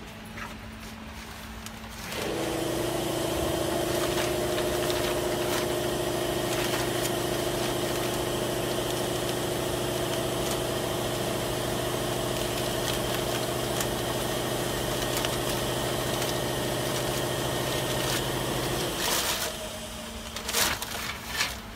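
An electric machine motor switches on about two seconds in and runs with a steady, even hum for around seventeen seconds, then cuts off suddenly near the end, followed by a few sharp clicks.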